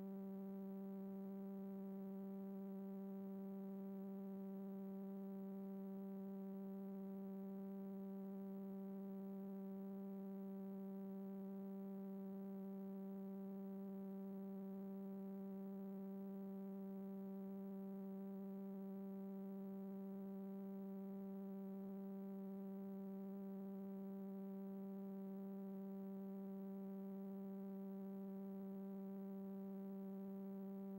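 Steady electrical hum in the audio line of a video playback with no signal: a low buzzy tone with a ladder of higher overtones that never changes. There is no programme sound, only the hum of the playback and capture chain.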